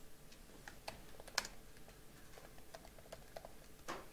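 Typing on a computer keyboard: a faint, irregular run of key clicks, with one sharper keystroke about a third of the way in and another near the end.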